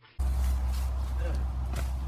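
A steady low rumble with hiss, as of outdoor background noise, starts abruptly just after the beginning and holds, with a brief faint vocal sound over it.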